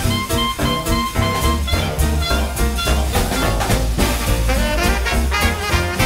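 Swing jazz music with brass instruments over a steady beat.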